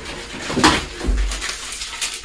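Rustling of packaging as items are lifted out of a cardboard box, with a sharp knock about half a second in and a dull thud about a second in.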